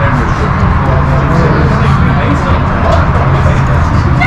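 Busy restaurant dining-area background: overlapping chatter from other diners with background music and a steady low hum.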